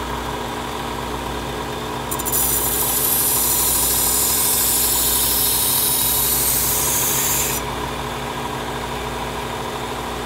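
Work Sharp Ken Onion Elite belt sharpener running at low speed with a steady motor hum; about two seconds in, a steel knife blade is pressed to the abrasive belt and ground with a loud hiss for about five seconds, then lifted off. The grinding is reprofiling the edge of a very dull chef's knife.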